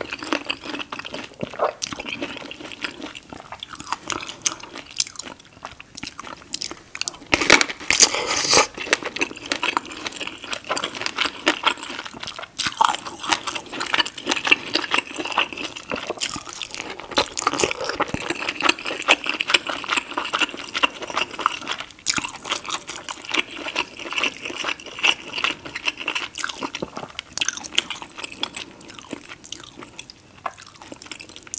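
Close-miked eating sounds: biting and chewing pineapple and sauce-drenched seafood boil, with wet, crunchy bites throughout and a louder burst of crunching about eight seconds in.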